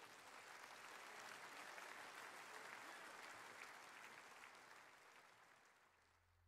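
Faint applause from a crowd, swelling up and then fading away.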